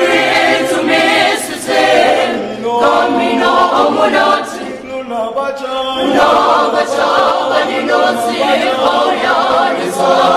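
A choir of mixed voices singing in harmony without instruments.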